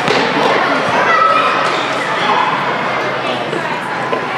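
Children's shouts and voices echoing in a large gym hall, with the thump of a futsal ball being kicked right at the start.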